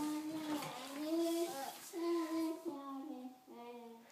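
A young child singing a wordless tune in a string of held notes that step up and down in pitch.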